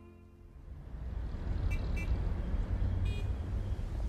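Bowed-string music ends, and street traffic rumble fades in. A car horn toots twice in quick succession about two seconds in, then once more, a little longer, a second later.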